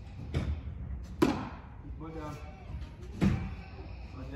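A pitched baseball smacking hard into a catcher's mitt about a second in, with a softer thud just before it and another near the end.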